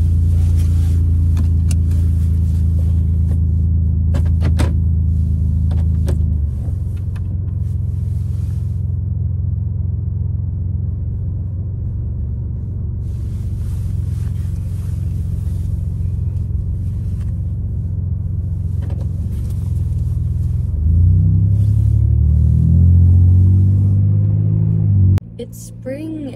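2008 Chevy Impala driving, heard inside the cabin: a loud low engine and road rumble with a steady hum. The hum drops in pitch about six seconds in, then steps up and climbs in the last few seconds before cutting off suddenly just before the end.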